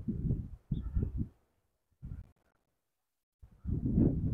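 Wind buffeting a wireless lavalier microphone that has no wind deflector: irregular gusts of low rumble. The sound cuts out to dead silence between gusts, twice for about a second.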